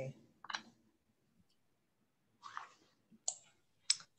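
Mostly near silence on a video call, broken by a few brief, faint noises and clicks. The two sharpest clicks come near the end.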